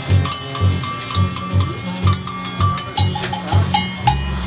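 Live street-band music: a bass pulse about twice a second under short, evenly repeated high metallic percussion strikes, with harmonica notes played over it.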